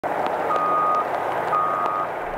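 Backup alarm on heavy construction equipment beeping: a single steady tone about half a second long, once a second, over steady machinery noise.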